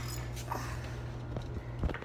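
Handling noise as a phone camera is reached for and picked up: a few soft knocks and rubs on the microphone, the clearest about half a second in and just before the end, over a steady low hum.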